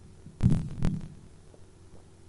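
Two dull thumps about half a second apart as a plastic water bottle is handled and drunk from close to a podium microphone.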